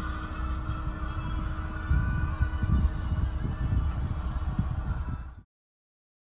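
Uneven low rumble of wind buffeting the microphone, under a faint steady hum. It cuts off suddenly about five and a half seconds in.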